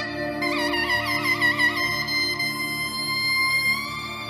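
Zurna playing a slow solo melody: a quickly wavering, ornamented phrase, then a long held note that bends up slightly near the end, over a low sustained accompaniment.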